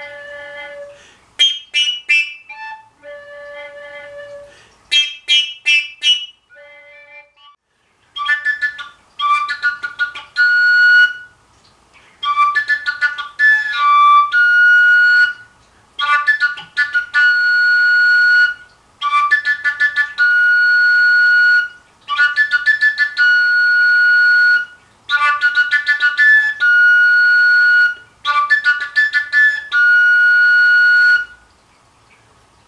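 Koncovka, the Slovak fingerless overtone flute, played with tongued notes. A few scattered short notes come first, then a short phrase repeats about seven times: a run of quick notes ending on a held high note. The exercise varies two or three notes of different pitch by the force of the breath.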